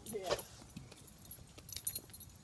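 A dog's collar tags jingling faintly in scattered clicks as the dog moves, with a quick cluster near the end, after a short spoken "yeah".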